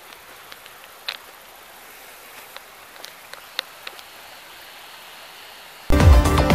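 Quiet outdoor ambience: a steady hiss with a few scattered light ticks and taps. Loud electronic music cuts in right at the end.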